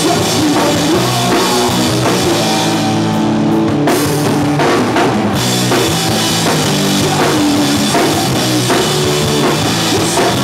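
Punk rock band playing loud and live: electric guitars, electric bass and a drum kit.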